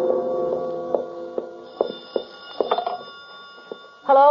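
A gong-like music sting fades out. Then come a run of irregular sharp clicks and high steady tones: telephone sound effects in a radio drama.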